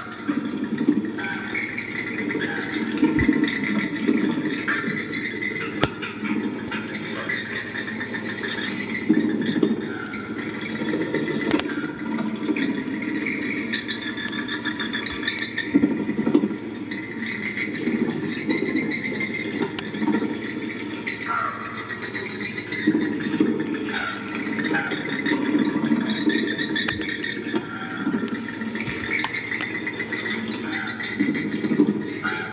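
Animated Halloween bat toy playing its electronic sound-effect track: a continuous squealing, screeching din, with a steady low hum underneath.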